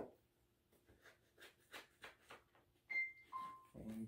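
Faint ticks and scrapes of a knife cutting through a cake in an aluminium foil pan, a few a second. Near the end come two short steady tones, a higher one and then a lower one.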